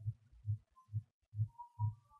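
Soft, low thuds in a steady rhythm, about two a second, with a faint thin tone near the end.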